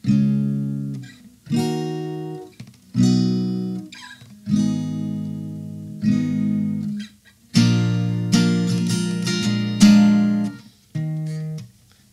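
Acoustic guitar playing the chorus chords of the song (G♯ minor, C♯, D♯ minor, B…), each chord plucked and left to ring for about a second and a half. A busier stretch of quick strokes follows from about halfway to near the end.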